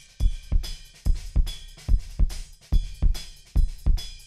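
Multitrack recording of an acoustic drum kit played back through a mixing console: a busy groove of kick, snare, hi-hat and cymbal hits a few tenths of a second apart, with a heavy low end and a lot of sixty hertz.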